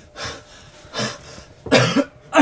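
A man breathing hard in three short gasping breaths, the last one the loudest and voiced.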